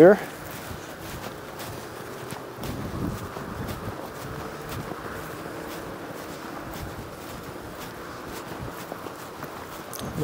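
Footsteps walking on a sandy track, over a steady background hum of traffic from a busy main road.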